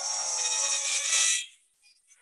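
Electronic sound from a UPIC graphic synthesizer, a dense buzzing texture with many held tones, which cuts off suddenly about one and a half seconds in.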